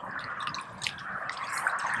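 Lake water splashing and dripping around a landing net holding a ghost carp as the net is drawn in at the bank, a rushing of water growing louder toward the end.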